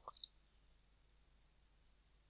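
A computer mouse button clicked, a short double click sound about a fifth of a second in; otherwise near silence.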